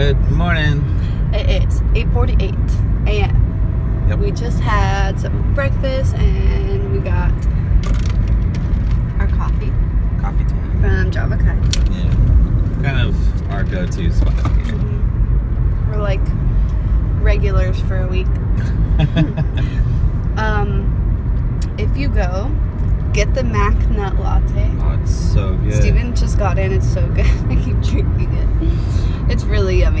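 Steady low road and engine rumble heard inside a moving car's cabin, with voices over it.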